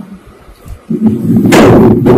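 A sudden, loud, rough burst of noise about a second in, overloading the recording for about a second.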